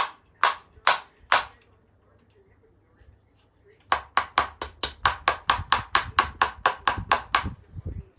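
Hammer blows on a fixing in a brick wall: four strikes about half a second apart, a pause of a couple of seconds, then a quick even run of about seventeen blows, roughly five a second.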